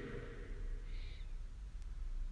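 Low, steady room rumble of a large church in a pause between a man's spoken phrases, with the last of his voice dying away at the start and a brief faint hiss about a second in.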